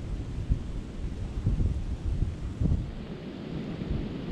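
Wind buffeting the action camera's microphone: an uneven, gusting low rumble with a few brief thumps.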